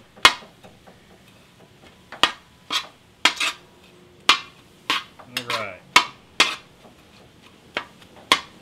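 Metal spatula clanking and scraping against the steel disc of a FIREDISC propane cooker while ground beef is stirred, in sharp strikes at an irregular pace.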